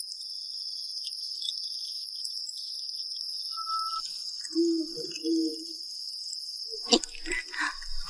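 Steady high-pitched chirring of crickets at night. Two short low-pitched sounds come about halfway through, and sharp clicks and rustling start near the end.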